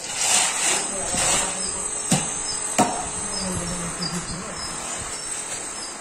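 Wet cement screed being scraped and levelled with a long metal straightedge, with two sharp knocks about two and three seconds in. A steady high-pitched whine runs underneath.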